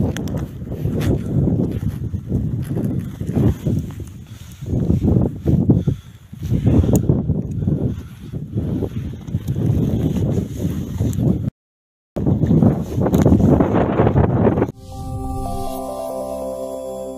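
Irregular low rumbling and crunching on a handheld phone's microphone, as of wind buffeting and footsteps through snow. It breaks off briefly, and near the end gives way to a soft music jingle of held notes.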